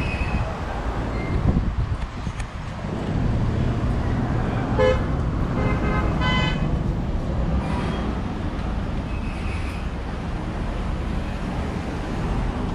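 Steady street-traffic rumble with a vehicle horn sounding twice: a brief toot about five seconds in, then a slightly longer one a second later.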